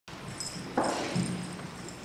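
Handheld microphone being handled as it is raised to speak, with a soft bump and rustle a little under a second in, over low room noise.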